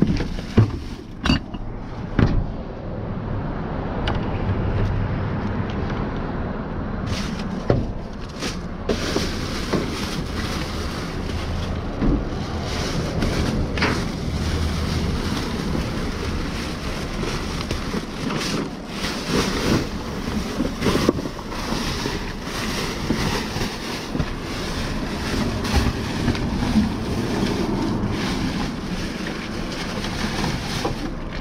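Plastic trash bags and packaging rustling and crinkling as gloved hands dig through a dumpster. Items knock now and then as they are shifted, over a low rumble of wind on the microphone.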